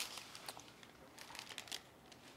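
Faint rustling with scattered small clicks, a little louder at the start and again past the middle.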